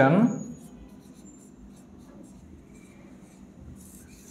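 Marker pen writing on a whiteboard: faint scratching strokes of the felt tip across the board, with a few short high squeaks.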